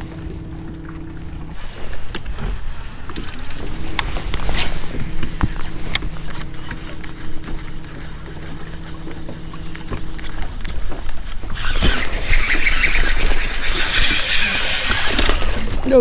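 Electric trolling motor humming steadily, with a short pause about two seconds in, until it stops around ten seconds. Then a hooked bass thrashes and splashes at the surface for several seconds as it is reeled up to the boat.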